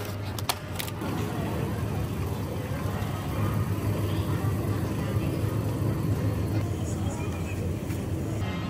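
Shopping cart rolling along a supermarket floor with a steady low rumble. A few sharp plastic clicks about the first second as an egg carton is set into the plastic basket.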